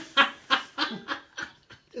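Laughter: a run of short chuckles that die away over about a second and a half.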